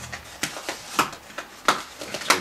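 Paper mailing envelope crinkling and rustling as it is pulled open by hand, a handful of short, sharp crackles.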